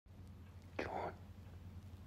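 A single short whisper about a second in, over a faint low hum.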